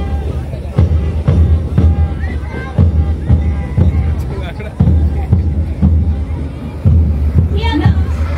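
Parade march music with a bass drum beating steadily about once a second, over crowd chatter.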